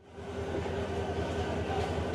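Railway platform sound beside a standing passenger train: a steady low hum with a faint held tone over a general noise, fading in at the start.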